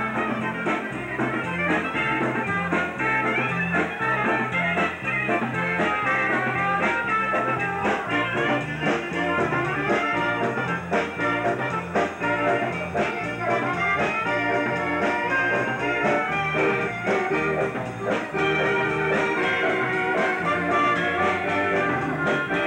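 Live dance band playing a lively tune with a steady beat, trumpet out front over accordion, electric keyboard and drums.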